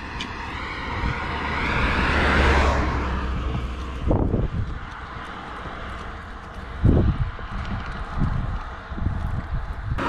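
A car passing on the road, growing louder to a peak about two and a half seconds in and then fading, over a steady low rumble of wind on the microphone. Two short low gusts or bumps come about four and seven seconds in.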